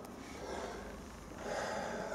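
Faint breathing of a man: two soft breaths, one about half a second in and a longer one near the end.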